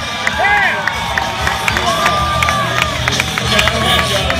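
Crowd of spectators shouting and cheering, many short rising-and-falling calls overlapping, with music playing underneath.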